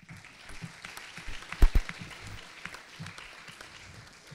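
Audience clapping in a lecture hall after a speech, fading toward the end, with two loud thumps about a second and a half in.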